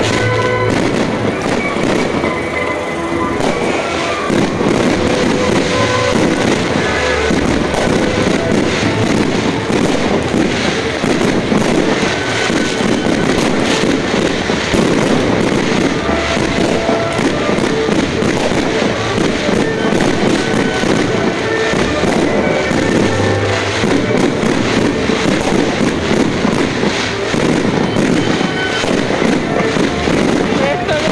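Aerial fireworks display: dense, continuous crackling and popping of bursting shells, with music also playing.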